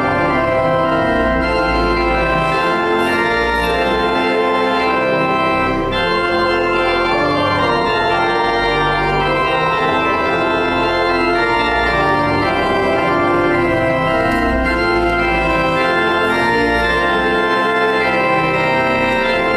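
Church organ playing sustained chords with deep pedal bass notes, the harmony changing every second or so.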